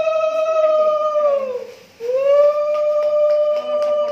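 Conch shell (shankha) blown in two long, steady blasts, each swelling up in pitch at the start and sagging down as it tails off; the first ends about a second and a half in, the second begins halfway through and carries on.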